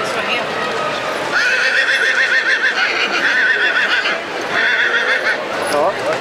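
A horse whinnying: a long, high, quavering whinny starting about a second and a half in, then a shorter one near the end.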